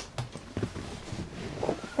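Faint rustling and a few light knocks from a fold-down sofa bed as its pull strap is tugged and the seat starts to fold flat.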